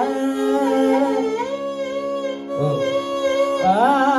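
Carnatic vocal alapana in raga Simhendramadhyamam: a male voice sings slow, wavering, gliding phrases over a steady drone, with the violin following the melody, and a short break in the phrase about two and a half seconds in.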